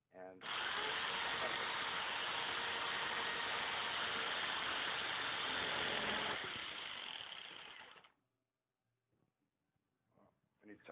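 Electric jigsaw cutting through a steel threaded rod clamped in a vise, a really loud steady run with the volume turned down in the recording. It holds level for about six seconds, then fades and goes silent about eight seconds in.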